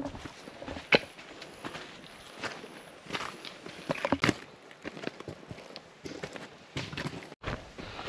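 Footsteps on a rocky dirt bush track strewn with leaves and roots: irregular crunches and scuffs of a person walking uphill.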